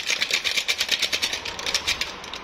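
Foil coffee-mix sachet crinkling as it is shaken and tapped over a cup to empty the powder, a fast run of dry rustling ticks, about eight to ten a second.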